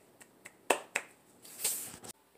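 A few scattered hand claps, the loudest about two-thirds of a second in, followed near the end by a short rustle.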